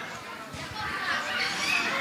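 Crowd chatter from many guests talking at once around banquet tables, with children's voices among them.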